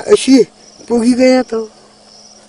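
A person's voice in two short spoken phrases, over a steady high chirring of insects that carries on through the pauses.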